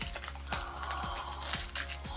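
Foil blind bag crinkling, with small crackles and clicks as it is pulled open, over quiet background music.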